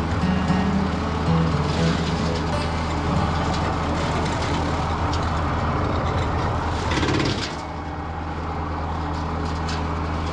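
Kubota BX compact tractor's three-cylinder diesel running under load while its rear rotary cutter mows tall weeds, with a steady engine hum beneath a rushing cutting noise. A little past seven seconds in, the sound swells briefly, then drops and becomes quieter.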